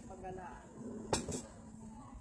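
Tableware clinking on a restaurant table: one sharp clink about a second in and a lighter one just after, over faint background chatter.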